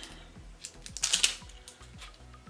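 Plastic wrapper of a Flip and Dip push pop crinkling and crackling in the hands as it is being opened, loudest a little after a second in, over quiet background music.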